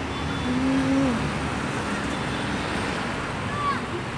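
Steady hum of road traffic from the nearby street, with faint distant voices now and then.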